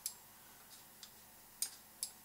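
A few faint, sharp computer-mouse clicks over quiet room tone, the clearest about one and a half seconds in.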